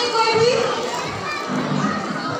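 Background chatter of a crowd of children and adults, with children's voices calling out over the babble.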